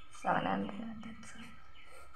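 A woman's single short, soft spoken word or murmur about half a second in, then low room tone.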